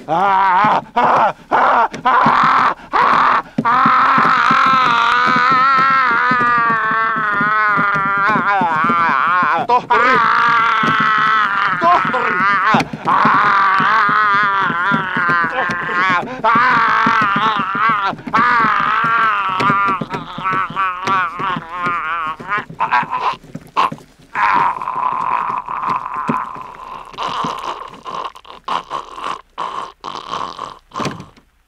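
A long, wavering moaning and wailing voice of a reanimated corpse, its pitch shaking throughout, settling to a steadier held tone in the last few seconds.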